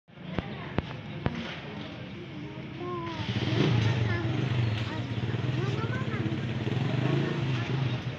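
Indistinct background voices over a low, steady, engine-like hum that grows louder about three seconds in, with three sharp clicks in the first second and a half.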